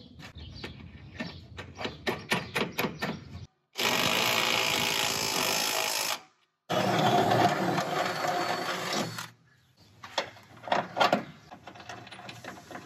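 Cordless drill boring up through aluminum in two runs of about two and a half seconds each, with a short stop between. Scattered clicks and taps come before and after the drilling.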